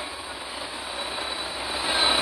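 Steady rushing background noise that slowly grows louder toward the end, with a faint high whistle in it.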